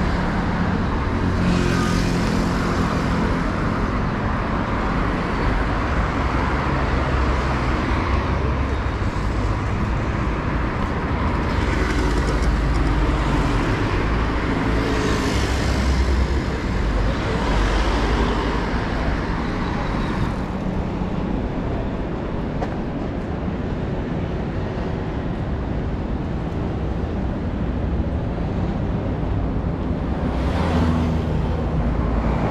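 City street traffic: cars and motorbikes driving past on a busy avenue, with several louder passes over the first twenty seconds before it eases a little.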